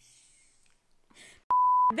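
A single short electronic beep near the end: one steady mid-pitched tone lasting under half a second that starts and stops abruptly. It follows a faint hiss and a brief breathy sound.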